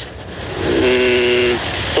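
A man's drawn-out, flat hesitation sound ("eeh") heard over a hissy, narrow-band telephone line, starting a little under a second in and lasting under a second.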